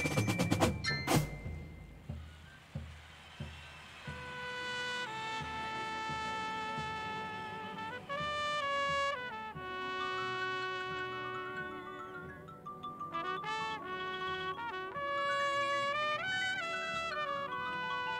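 Drum and bugle corps: a few sharp drum strokes open, then the horn line sustains soft chords from about four seconds in while a solo soprano bugle plays a slow melody above them.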